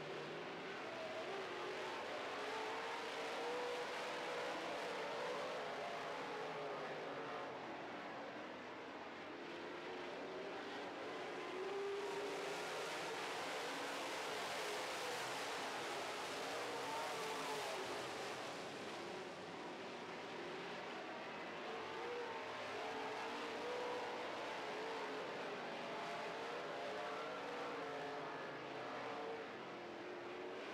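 A field of dirt-track modified race cars running at speed, their V8 engines rising and falling in pitch as they work around the oval. It gets louder for a few seconds midway through, as cars pass close.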